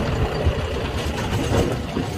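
Tractor engine running steadily, a low rumble with occasional short knocks over it.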